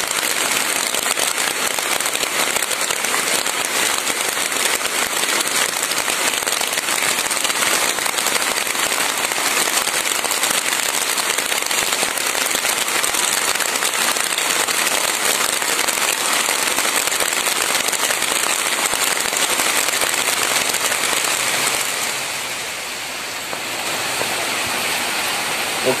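Steady rain falling, a dense even hiss of drops on leaves and wet ground, easing slightly for a moment near the end.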